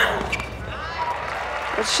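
A tennis ball struck hard on a racket with a player's short grunt at the very start, followed by steady crowd noise from the stadium stands.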